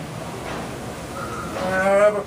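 A drawn-out vocal call that starts near the end, rising in pitch, after a quieter stretch.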